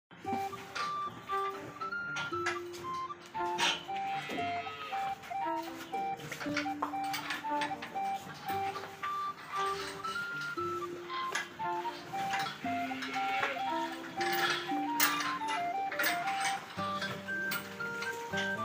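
Background instrumental music: a simple, chime-like melody of short held notes over a moving bass line, with light percussive clicks.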